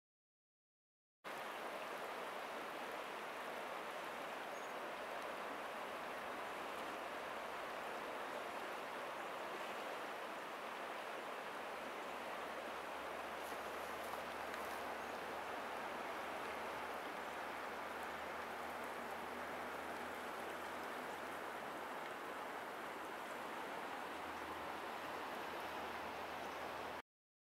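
River water rushing steadily over shallow riffles, starting about a second in.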